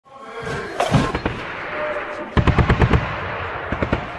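Gunfire sound effect over a music intro: a few sharp shots about a second in, then a rapid burst of about eight shots in half a second about halfway through.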